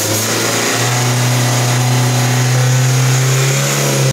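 Ford Courier diesel engine running steadily with its bonnet open, burning off soot that the DPF cleaning fluid has loosened in the particulate filter. Its pitch steps up slightly just under a second in and then holds.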